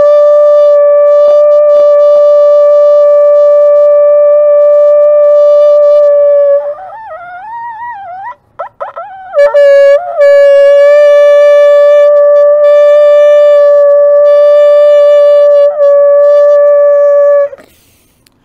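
A ram's-horn bukkehorn blown in two long, steady, loud notes on the same pitch. Between them, a few seconds in, the note breaks into weaker, wavering sounds while the player looks for the horn's sweet spot.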